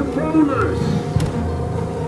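Ride soundtrack music playing, with a voice over it in the first part and a single sharp click a little over a second in.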